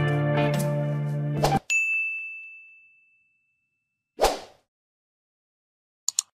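Background music stops about a second and a half in, then a single bell-like ding rings out and fades. About four seconds in comes one short whoosh, followed by silence.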